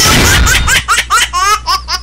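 Logo sting of a TV comedy show: a whoosh fading out, then a high, sped-up cartoon laugh effect, a quick run of short rising 'ha' notes, over a low steady hum.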